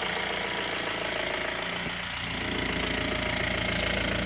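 A vehicle engine idling steadily.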